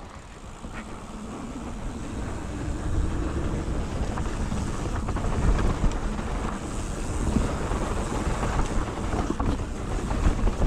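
Wind rushing over a GoPro Hero 7's microphone mixed with a mountain bike's tyres rolling over loose, dry dirt, with small rattles and clicks from the bike. It gets louder over the first three seconds as the bike picks up speed downhill, then stays loud.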